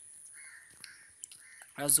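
Two faint, harsh calls of a bird in the background, the first lasting about half a second and the second shorter, over a steady faint high-pitched hiss; a man's voice comes in at the very end.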